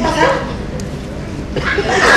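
A person's voice making short vocal sounds, the strongest right at the start, over the room noise of a theatre hall; louder voices build near the end.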